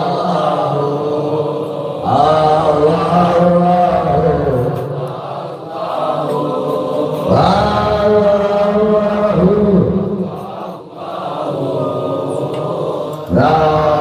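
A man's voice chanting an Islamic devotional invocation into a handheld microphone, in long drawn-out melodic phrases with short breaths between them.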